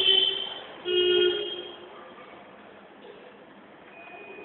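A vehicle horn honks twice: a short toot, then a longer one about a second in.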